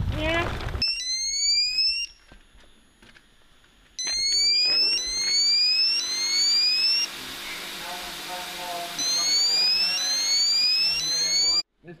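Electronic alarm sounding a fast series of rising whoops, about two a second, stopping for a couple of seconds and then starting again.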